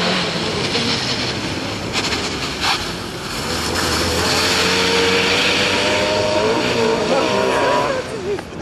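Fiat Seicento rally car driven hard past at close range, its small engine revving, with tyres hissing through water on the wet track; the engine note climbs steadily over the last few seconds.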